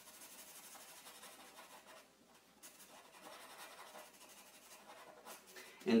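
Black felt-tip marker rubbing back and forth on paper as it colours in a solid black area. Faint, with a short pause about two seconds in.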